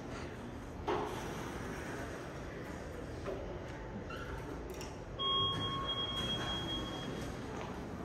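Elevator arrival chime from a KONE-modernized traction elevator: a single held electronic tone, with a fainter higher one above it, starting about five seconds in and lasting about two seconds as the car arrives and its doors slide open. A short knock comes about a second in, over a low steady lobby hum.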